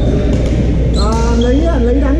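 Badminton hall during play: short high squeaks of shoes on the hardwood floor and the odd sharp racket hit on a shuttlecock, over a steady low hum. A voice talks from about a second in.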